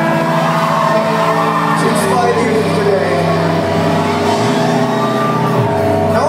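Live rock band playing an instrumental passage, heard from within the crowd: held guitar and keyboard chords over a bass note that changes near the end, with crowd voices shouting over it.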